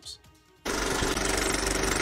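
Rapid, even clatter of a film projector, a sound effect laid over a countdown leader, with a steady tone under it. It starts suddenly about two-thirds of a second in, after a short near-quiet pause.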